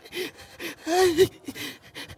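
A person gasping and moaning: short, breathy voice sounds with a wavering pitch, the loudest about a second in.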